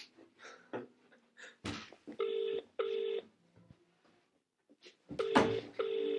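UK ringback tone of an outgoing call from a mobile phone on loudspeaker: two double rings (ring-ring), about three seconds apart, with the call still unanswered. A single thump comes about half a second before the first ring.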